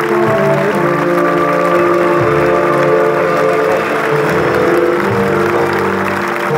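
Live band music with held chords and a bass line, over an audience clapping.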